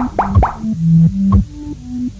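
Electronic dance music: a deep kick drum about once a second under a stepping synth bass line, with a few quick rising synth blips near the start and short clicks between the beats.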